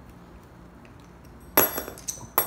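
Quiet, then a sharp metallic clink with a ringing tail about one and a half seconds in, as the steel hex key and bolts are handled against an aluminium hydraulic valve block while it is being unbolted.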